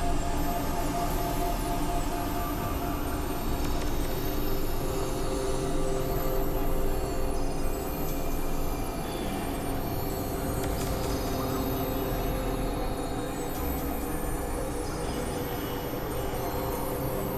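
Dense layered experimental electronic music: sustained droning tones over a low rumble, with high whistling sweeps that fall in pitch every few seconds.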